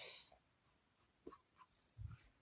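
Pencil scratching on sketch-pad paper while shading: one longer stroke at the start, then a few brief, faint strokes.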